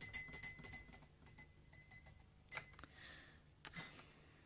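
Faint clinks of cutlery against tea glasses and plates at a meal table: a quick run of light, ringing taps in the first couple of seconds, then a few soft rustles.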